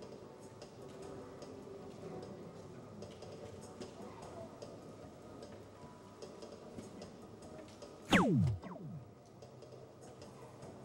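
Electronic soft-tip dartboard registering a dart in single 17: a loud, quick electronic sweep falling steeply in pitch about eight seconds in, with a fainter second sweep just after. Faint scattered ticks run underneath.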